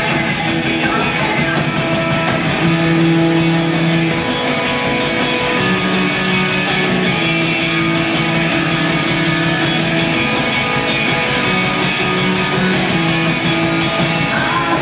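Live three-piece rock band playing loud: distorted electric guitar, drum kit and keyboard, with long held notes over steady drumming. The sound gets brighter about three seconds in.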